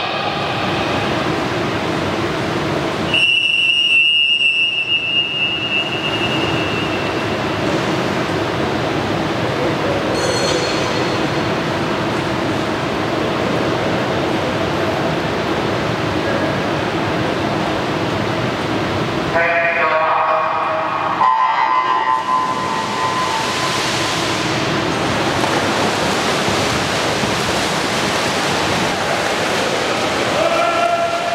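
Indoor pool hall with a steady rushing noise throughout. A referee's long whistle sounds about three seconds in and fades over a few seconds. About twenty seconds in comes the starter's short call, then the electronic start beep, followed by splashing as the swimmers dive in and swim freestyle.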